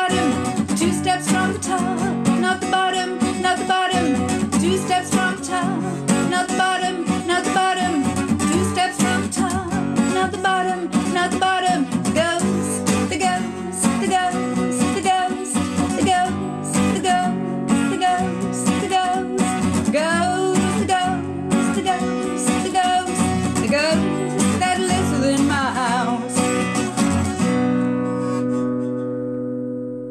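A woman singing to a strummed acoustic guitar. Near the end the singing stops and a last chord is left to ring out and fade.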